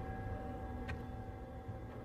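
A low steady rumble with a few faint held tones under it, the kind of ambient drone laid under a tense dramatic scene, with one short click about a second in.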